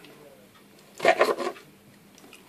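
A short voiced sound, a brief murmur or half-word, about a second in, over faint sounds of small knives cutting carrot on a plastic chopping board.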